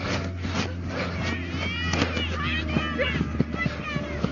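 Players and sideline voices shouting and calling across a rugby league field during open play: many short, high-pitched calls, over a steady low hum.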